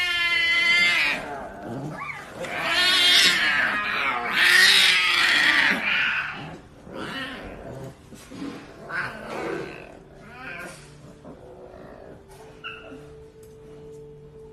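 Tiger cubs crying with loud, harsh, drawn-out calls through the first six seconds, then shorter, quieter calls.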